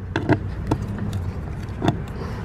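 A duplicate key clicking and scraping as it is pushed into a bus door's key lock, a few sharp clicks over a steady low hum. The copy sticks in the lock, caught by a tiny ridge left on the tip of the badly cut key.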